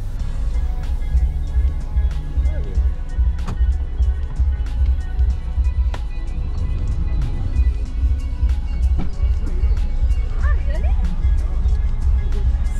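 Background music with a steady, bass-heavy beat, with faint voices in places.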